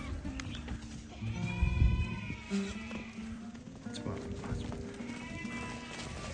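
Background music with sheep bleating over it: a long bleat about a second in and a shorter one about five seconds in, from Sardi sheep.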